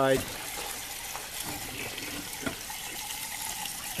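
Steady hiss and trickle of water running in an aquaponics flood-and-drain grow bed, with the bell siphon stuck and not siphoning.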